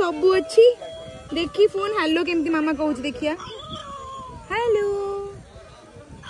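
Children's toy mobile phone playing a tune through its small speaker, followed about four and a half seconds in by a short recorded animal call that rises and then holds.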